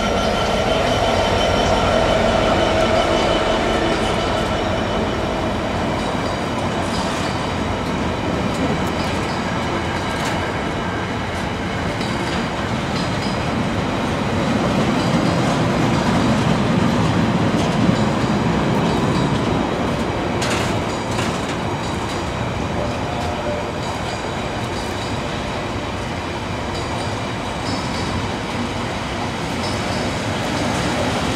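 Freightliner Class 66 diesel locomotive passing, its engine note fading in the first few seconds. A long train of box wagons follows, rolling past with a steady noise of wheels on the rails and occasional clicks.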